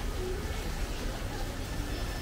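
Restaurant room noise: a steady low rumble with faint voices in the background.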